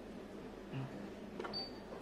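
Quiet room tone with the faint click of a soft key pressed on a digital storage oscilloscope's front panel about one and a half seconds in, followed by a brief high tone.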